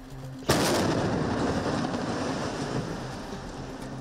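A house being blown up with explosives: one sharp bang about half a second in, then a rumble that fades slowly over the next three seconds.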